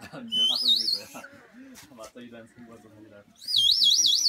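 A toy bird whistle blown twice, each burst a high warble wobbling quickly and evenly up and down for about a second, with people talking underneath.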